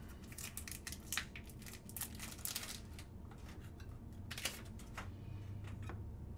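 Faint handling sounds of a trading card and a clear plastic card holder: several light clicks and scrapes in the first three seconds and one more about four and a half seconds in.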